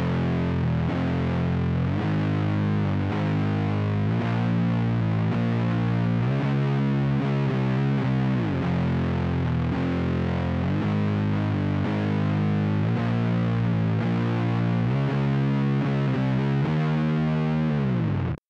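Heavily distorted electric guitar tuned down to C standard, playing a slow doom metal riff in F minor: sustained low notes and intervals that change every second or two, joined by several sliding pitch drops.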